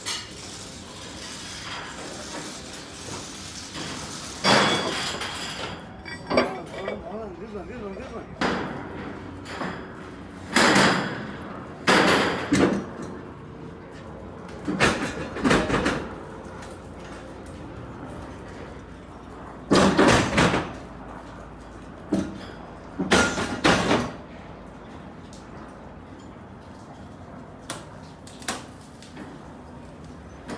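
Irregular loud metal clanks and bangs, about a dozen, several in quick pairs, from heavy steel beams and rigging being worked, with voices of workers in between.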